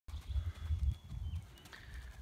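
Horse's hoofbeats on arena sand, dull thuds under an uneven low rumble.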